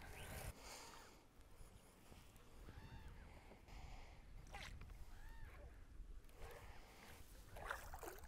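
Near silence: faint lake ambience with light water sounds around the boat and a low wind rumble on the microphone.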